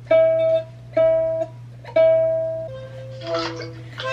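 Ukulele being plucked slowly: three matching chords about a second apart, each ringing and fading, then a lower note near the end. A steady low hum lies underneath.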